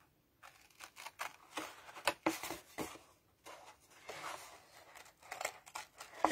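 Small 4.5-inch X-Cut craft scissors snipping through wood-grain patterned paper: a run of short, irregular snips, faint, starting about half a second in.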